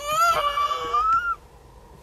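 Toddler whining: one long, high, drawn-out cry that rises at the start and stops about a second and a half in.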